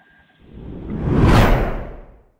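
Whoosh sound effect of an animated logo sting. It swells up from about half a second in to a peak and dies away near the end, with a deep rumble underneath.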